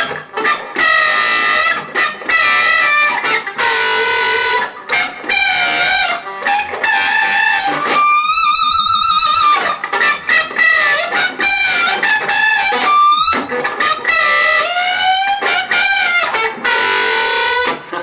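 Electric guitar playing a lead lick of pre-bent B-string notes plucked with the fingers, damped with the picking hand and bent up in pitch. The result is a crazy-sounding, slightly out-of-pitch squeal. The notes are cut off short again and again, and about halfway through one note is held with a wide, wavering vibrato.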